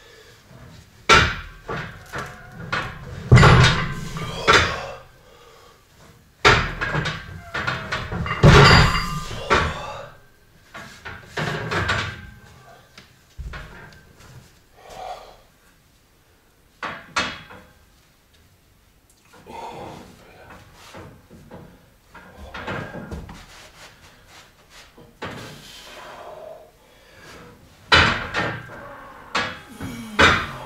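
Steel barbell loaded to 340 kg clanking and knocking against the power rack's uprights and stops during a heavy rack pull, in several bursts of rattling knocks with quieter spells between.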